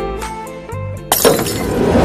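Music with plucked-string notes fading out, then about a second in a sudden loud crash that opens a dense, noisy swell.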